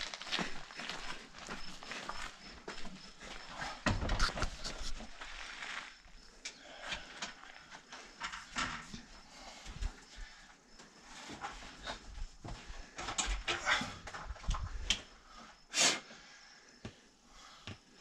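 Handling noises as a tall portable party speaker is carried across gravel and set down in the back of a van: footsteps, scuffs and knocks, with a heavier thump about four seconds in.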